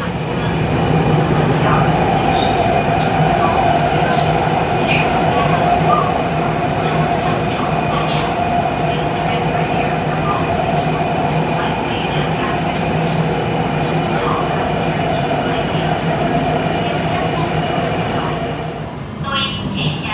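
Taipei MRT Bannan line train running, heard from inside the passenger car: a steady rumble with a steady whine over it. It eases off about a second before the end, when a voice begins.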